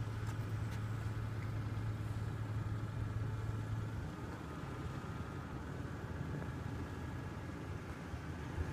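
Steady low hum of a car idling, heard inside the cabin. The hum drops away about four seconds in, leaving a quieter low rumble.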